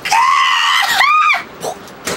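A woman's high-pitched shrieking vocal, held for nearly a second, followed by a shorter squeal that rises and falls before stopping.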